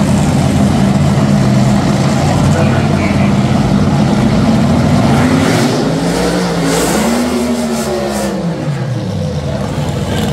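Drag-racing dragster engine running loud, then rising in pitch about seven seconds in as the car launches and pulls away down the strip, the sound falling off as it goes.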